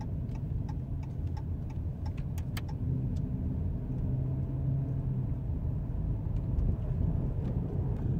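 Inside a moving car: a steady low engine and road rumble, with a light regular ticking about three times a second that fades out about three seconds in.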